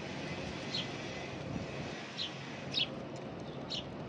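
Short, high chirps from a small bird, four of them about a second apart, over a steady low background hum.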